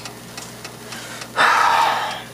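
A sudden loud hiss of steam off a hot frying pan, starting about one and a half seconds in.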